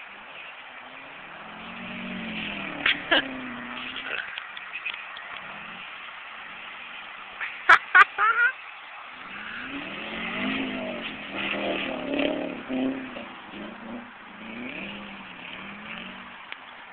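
Subaru's boxer engine revving in repeated rising and falling waves as the car spins donuts in snow, heard from a distance. It swells once early, then revs again and again through the second half.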